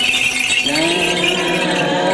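Small metal bells jingling continuously. About half a second in, voices begin chanting a slow melody of held, gliding notes over them, in the manner of Orthodox liturgical chant.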